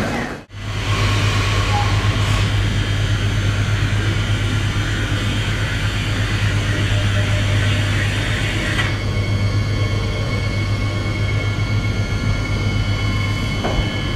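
Omneo Premium double-deck electric train at the platform: a steady low hum and rumble, with a thin high whine setting in about nine seconds in as the train pulls away. The sound drops out briefly just after the start.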